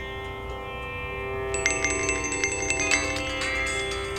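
Instrumental music with a steady drone in the manner of the sitar music just before it. About one and a half seconds in, a phone's electronic ringtone starts over it: a quick, repeating trill of high ringing tones.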